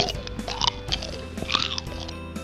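A person making pretend munching noises with the mouth for a toy that is being fed, in a few short bursts, over light background music.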